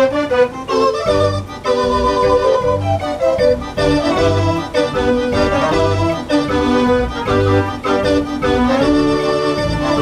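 Decap dance organ playing a tune: pipes and accordions carry a stepping melody over bass notes and drum beats that come at a steady rhythm.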